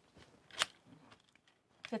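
Quiet handling of a black plastic EEG headset with dry electrodes, with one short sharp click about half a second in and a few faint small knocks.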